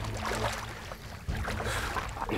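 Water splashing and lapping around people swimming and moving about in open water, in uneven, irregular strokes.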